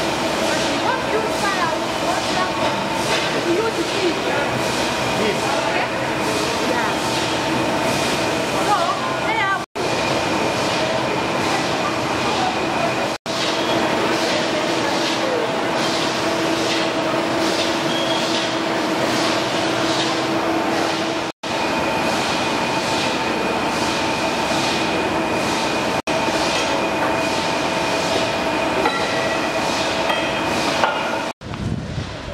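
Sweets-factory production machinery running, a loud steady din with several held tones and a regular clatter. The sound drops out suddenly and briefly four times.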